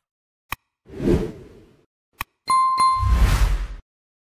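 Animated outro sound effects: a short click, a swoosh, another click, then two quick ringing dings about a third of a second apart over a second swoosh.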